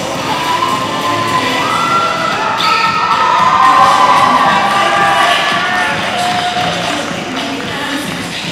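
Crowd of children cheering and shrieking over playing music, swelling to a peak around the middle and dying down near the end.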